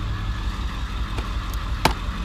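A vehicle engine idling with a steady low rumble. Near the end there is one sharp knock, from sports gear being handled in a plastic laundry basket.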